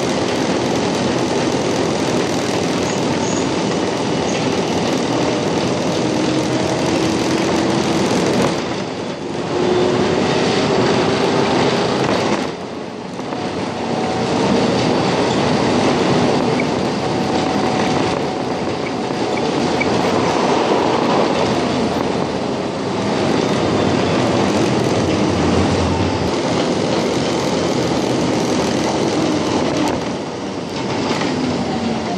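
A Budapest tram running along its line, heard from inside the car: a steady rumble of wheels on the rails, with thin whining tones that drift slowly in pitch. The noise dips briefly twice, about a third of the way through.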